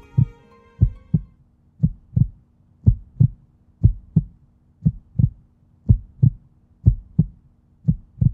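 Heartbeat sound effect: pairs of low lub-dub thumps repeating about once a second, over a faint steady low hum.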